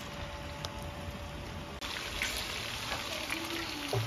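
Sliced calabresa sausage sizzling as it fries in a large aluminium pan on a wood-fired stove: a steady sizzle with scattered small pops.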